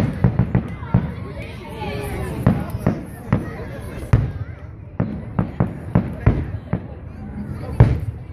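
Aerial fireworks shells bursting overhead: an irregular run of sharp bangs, several a second at times, with the loudest bangs at the start and near the end.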